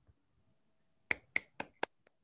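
Four quick, sharp hand sounds in a row, about four a second, given as brief applause at the end of a told story.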